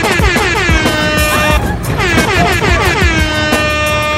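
Air horn sound effect blaring twice over music with a steady beat; each blast starts with a falling pitch and then holds steady, the second beginning about two seconds in.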